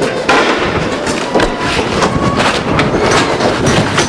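Handling noise from a handheld camcorder jostled in a scuffle: clothing rubbing and knocking against the camera and its microphone in a dense run of crackles and knocks.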